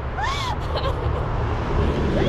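A woman's short laughing exclamation, one rising-and-falling vocal sound near the start, over a steady low rumble.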